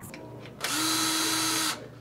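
Cordless power drill running at a steady speed for about a second, starting about half a second in and stopping sharply, as it works on a bicycle frame.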